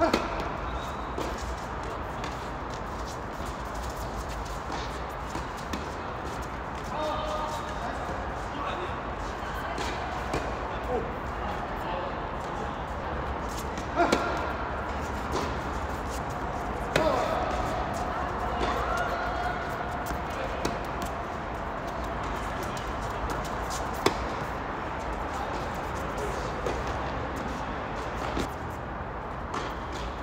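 Tennis balls struck by rackets and bouncing on a hard court during doubles play: a few sharp pops several seconds apart, the loudest about 14 and 24 seconds in. Voices can be heard faintly in the background.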